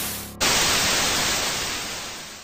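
Television static sound effect: an even, loud hiss that jumps up about half a second in as the tail of the background music drops away.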